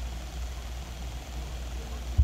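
Quiet room tone with a steady low rumble underneath and no other distinct sound.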